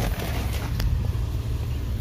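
Steady low rumble of outdoor traffic noise as a car door is opened and someone steps out onto a parking lot, with two faint clicks a little under a second in.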